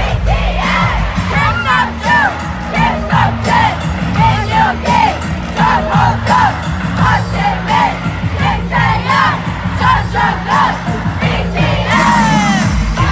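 A large crowd screaming and cheering, many high-pitched shrieks overlapping, with music underneath.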